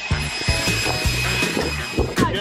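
Cordless leaf blower running with a steady high whine, under background music with a pulsing bass beat.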